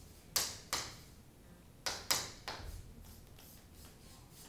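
Chalk strokes on a chalkboard as lines are drawn: about five short, scratchy strokes, each starting with a sharp tap. Two come in quick succession about half a second in, and three more come around two seconds in.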